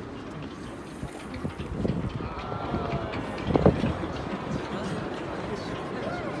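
Spectators' voices murmuring at a football penalty shootout, with a single sharp thump about three and a half seconds in as the loudest sound.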